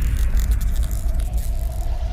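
Logo-intro sound effect: the fading tail of a whoosh-and-boom sting, a deep steady rumble with a faint crackle of sparks over it, slowly dying away.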